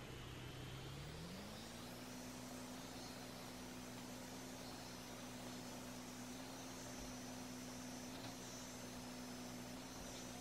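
Foreo Bear facial toning device buzzing faintly as it is run over the face; about a second in its hum rises in pitch, then holds steady.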